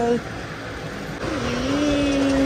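Road traffic noise, with a voice holding one long drawn-out note in the second half.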